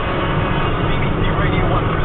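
Car cabin noise while driving: a steady low engine and road rumble, with a faint voice heard over it.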